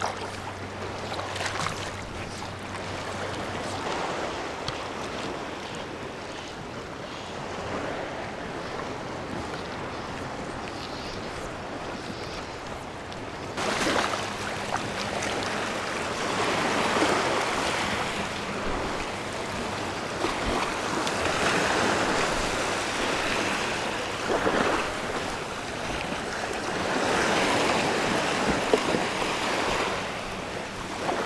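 Small surf waves washing up onto a sandy beach, with wind on the microphone. The surf gets louder about halfway through and swells and falls every few seconds.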